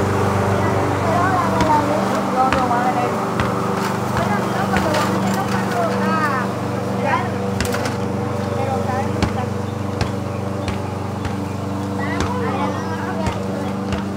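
Petrol walk-behind lawn mower engine running at a steady pitch, with voices talking over it and a few sharp clicks.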